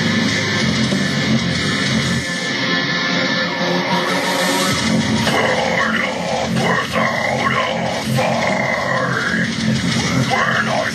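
Deathcore instrumental with distorted guitars and drums. About five seconds in, harsh screamed vocals come in over it.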